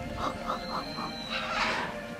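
Capybara munching on grass: about five quick, evenly spaced chewing sounds in the first second, then a short burst of noise near the end.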